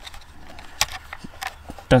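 Light plastic clicks and handling noise from a DJI Mavic Air 2 remote controller as its phone clamp is handled and the stowed phone cable is pulled out from under it; a few sharp ticks, the last and loudest near the end.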